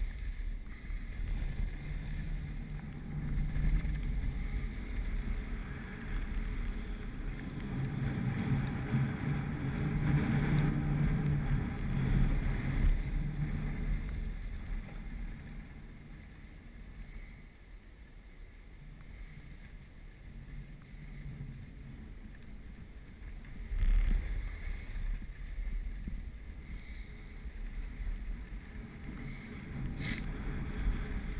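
Wind rushing over the microphone of a camera carried by a skier on a downhill run, with the hiss of skis sliding on snow. Louder through the first half, easing through the middle as the slope flattens, with a brief loud burst about 24 seconds in.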